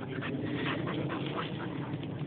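Springer spaniel panting, about five short breaths a second, dying away near the end.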